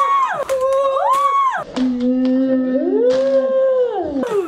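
A woman singing long, drawn-out notes, three times swooping up from a held note and back down. A second, lower voice holds one steady note for a couple of seconds in the middle.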